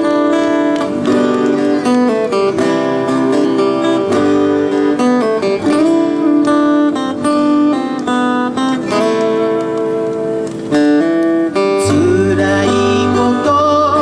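Live band music: acoustic guitars strummed under sustained, held melody notes, with a singing voice coming in near the end.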